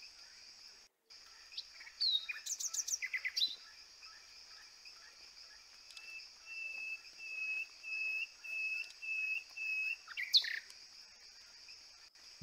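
Java sparrow calls over a steady high hiss. A burst of quick high chirps comes about two seconds in, then a row of about eight short even notes, roughly two a second, and a sharp call near the end.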